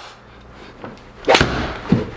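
A full-speed 8-iron swing striking a golf ball: one sharp, loud crack of the club hitting the ball about a second and a quarter in, followed about half a second later by a second, duller thud.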